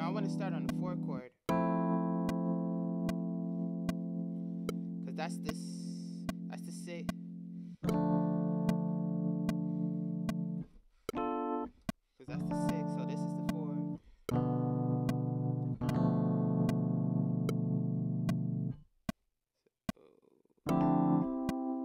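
Sustained chords played on a keyboard through a software instrument in Pro Tools, each held for several seconds with short breaks between them, as a chord progression is tried out. A metronome click ticks about every 0.6 s underneath.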